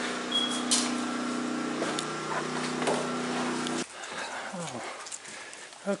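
Steady hum of a generator, a level drone made of several even tones, that cuts off suddenly a little under four seconds in. After that only quieter outdoor background remains.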